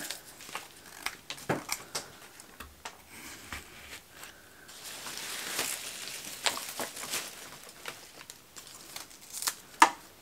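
Handling noise of cut flowers being arranged: soft rustling of leaves and stems and scattered small clicks as rose stems are pushed into wet floral foam, with one sharper click near the end.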